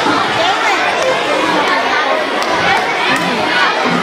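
A large crowd of young children chattering all at once, many overlapping voices with no single speaker standing out, at a steady level.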